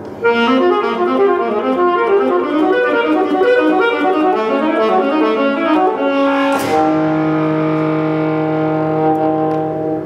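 Saxophone and grand piano playing a fast, busy passage of many short notes. About six and a half seconds in, a sharp accent lands and a single low note is held steadily until near the end.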